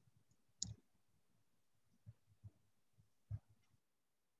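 Near silence with a few faint, short clicks: one about half a second in, then three weaker ones between two and three and a half seconds in.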